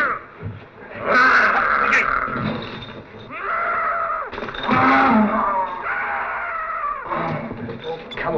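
Frankenstein's monster giving a series of long, wordless growling cries that rise and fall in pitch.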